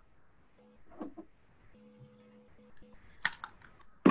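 Faint clicks and knocks of someone handling a laptop close to its microphone, the loudest a quick cluster of sharp clicks about three seconds in.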